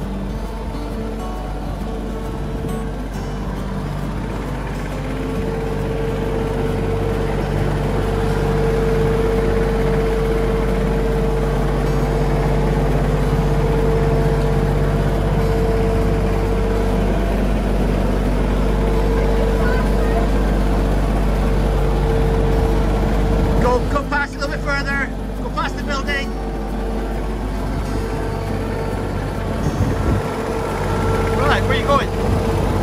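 Compact front-loader tractor's engine running steadily as the tractor is driven slowly, with a steady whine over the engine note; it gets a little louder after the first few seconds.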